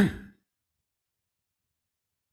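A man's short spoken "so" with a falling pitch right at the start, then dead silence.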